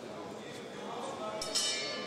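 Boxing ring bell rung about a second and a half in, a short bright ringing clang signalling the end of the round, over crowd voices.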